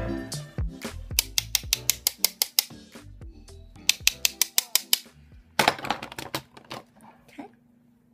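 Makeup brush tapped in quick runs against the edge of a metal eyeshadow palette to knock off excess powder, giving sharp clicks about six a second in three bursts, over background music.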